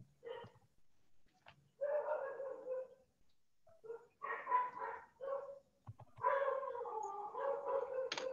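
A dog vocalising in three drawn-out calls, each about one to two seconds long, on a fairly steady pitch.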